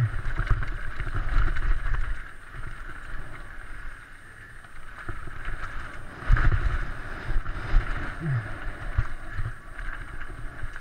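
Mountain bike descending a loose-stone trail at speed: wind buffeting the on-board camera's microphone over the rumble and rattle of tyres and bike on rough ground. It is loudest in the first two seconds and again about six seconds in.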